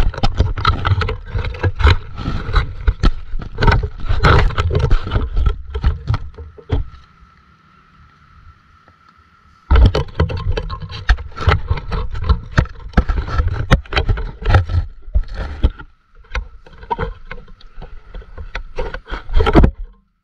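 Water splashing and sloshing close against an action camera's housing at the surface of a shallow stream, with dense knocks and scrapes as hands work a fish in the water right at the lens. About seven seconds in it drops to a muffled hush for about three seconds, then the splashing resumes.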